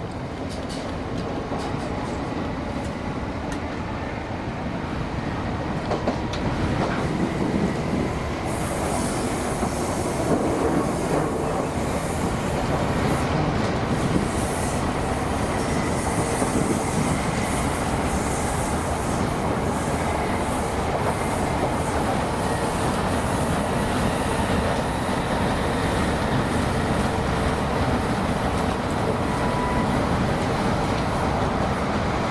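Class 317 electric multiple unit running along the line, heard from inside the passenger saloon: a dense rumble of wheels on rail with scattered clicks, growing louder over the first eight seconds or so, then steady, with a brighter rushing sound joining from about eight seconds in.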